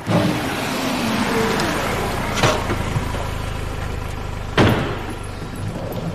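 A car running with a steady rush of road noise and a low hum, broken by two sharp knocks a couple of seconds apart, the second one louder.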